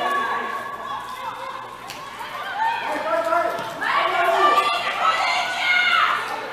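Several people's voices talking and calling out, overlapping and unclear, louder in the second half.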